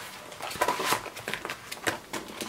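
Paper rustling and handling, with a few light clicks and taps, as paper inserts and pocket pages of a traveler's notebook are lifted and moved.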